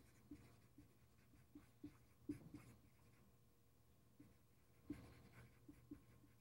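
Dry-erase marker writing on a whiteboard: faint, scattered short strokes and taps of the felt tip, in small bursts as letters are formed.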